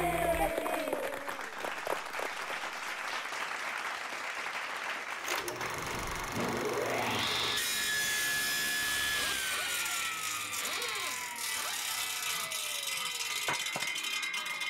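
Logo sting built from power-saw sound effects: a rasping sawing noise, then a blade spinning up with a rising whine about six seconds in, followed by a high tone that holds and then glides steadily down, with a sharp click near the end. The last guitar chord of the song dies away at the very start.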